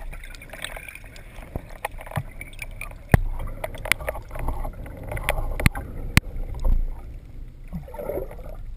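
Underwater sound picked up by a diving camera: a fluctuating low rumble of water moving past the housing, with a handful of sharp clicks and knocks scattered through.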